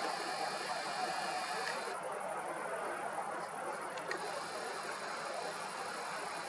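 Steady, even urban background noise with no distinct events, the low hum of distant city traffic.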